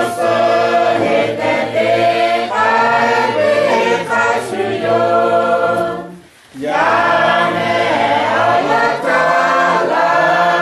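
A choir singing in several voices, apparently unaccompanied, with a short pause between phrases about six seconds in.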